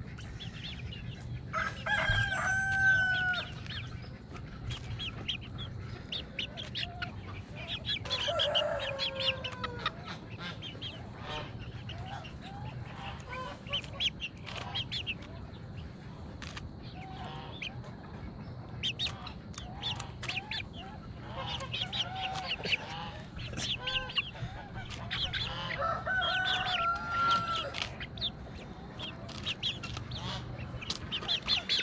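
Hens clucking and pecking at a head of romaine lettuce, with many small taps, while a rooster crows three times: about two seconds in, around eight seconds, and again near the end.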